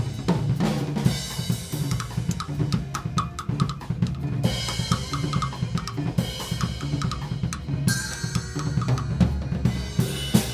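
Drum kit played at a very fast tempo in a Latin jazz groove: rapid snare and tom strokes over bass drum, with Zildjian cymbals and hi-hat ringing through.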